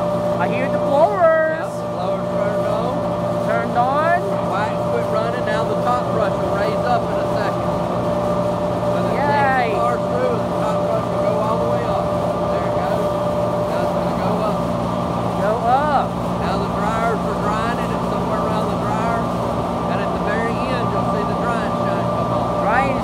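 Automatic tunnel car wash equipment running an empty test cycle: a steady machinery hum made of several held tones from pumps and motors, over the hiss of water spray.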